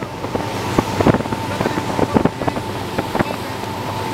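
A boat's engine running steadily, with wind on the microphone and several short, sharp knocks.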